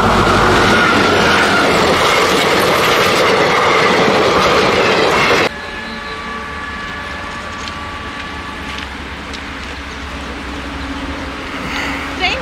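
A diesel locomotive passes close by with its train: a loud, steady rush of engine and wheels on the rails, with a held tone at first that slides slightly lower. It cuts off abruptly about five and a half seconds in, leaving much quieter outdoor background.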